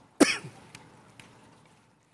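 A man coughs once, short and sharp, about a fifth of a second in, followed by a couple of faint ticks.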